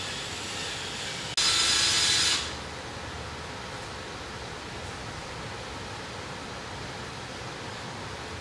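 Power drill running a left-hand drill bit into a broken hardened head stud in an engine block: one short whining burst of about a second that starts suddenly a little over a second in. Before and after it there is only a steady background hiss.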